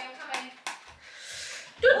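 Handling sounds: two sharp taps, then a short soft rustle, between bits of speech.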